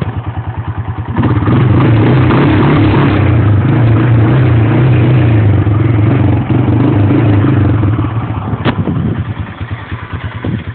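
ATV engine idling with an even pulsing beat, then brought up about a second in to run at higher, steady revs. Near the end it drops back toward idle, with one sharp click just before.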